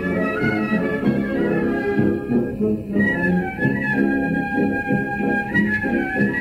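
Wind band playing a pasodoble, clarinets and brass carrying the melody over a steady beat.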